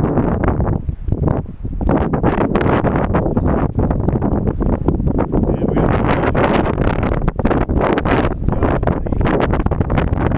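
Wind buffeting the camera's microphone: a loud, rough, fluttering rumble that eases briefly a second or so in.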